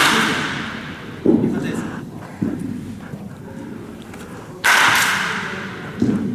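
A baseball bat cracking against a pitched ball twice, once right at the start and again near the end, each crack ringing on in the large indoor hall. Between them come two duller thumps, the ball landing in the netting or on the floor.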